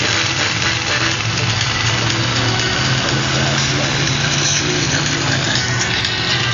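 Monster truck engine running at a steady low pitch, under a constant hiss of outdoor noise.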